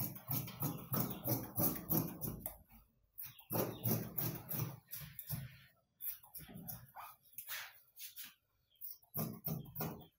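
Tailor's shears cutting through trouser fabric on a table, a run of crisp snips in quick clusters with short pauses between strokes.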